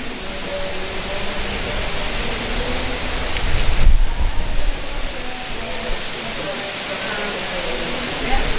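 Steady outdoor noise of wind on the microphone, with a stronger rumbling gust about halfway through. A voice speaks faintly in the distance underneath.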